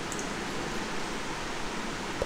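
Steady background hiss of microphone and room noise, with no distinct events.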